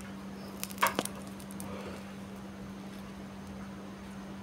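Yellow insulating tape being peeled off a phone battery's protection circuit board, giving a short cluster of crackles about a second in. A steady low hum sits underneath.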